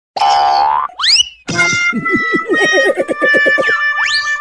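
Cartoon comedy sound effects: after a short loud burst, a springy boing of quick rising whistle glides, then a rapid string of high-pitched cartoon laughter over a few steady musical tones.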